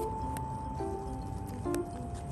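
Background music: long held notes that step down in pitch a few times, with a few light clicks.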